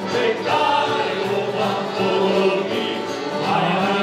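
A group of men singing together, accompanied by two piano accordions, an acoustic guitar and an electric bass guitar.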